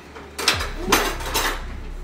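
Dishes and cutlery clattering on a kitchen counter: three sharp clinks and knocks about half a second apart.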